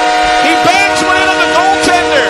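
Ice hockey arena goal horn sounding a steady multi-note chord, signalling a goal for the home team, with voices over it.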